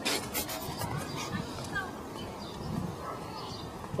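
Rubbing and scuffing of a hand-held camera being carried while walking, with footsteps on steps and a concrete path and a few small clicks.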